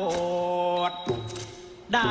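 Music with a voice singing a slow, chant-like melody in long held notes. The line drops to a lower note about a second in and fades before the next phrase begins at the end.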